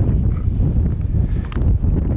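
Wind buffeting the microphone as a steady low rumble, with a faint click or knock about one and a half seconds in.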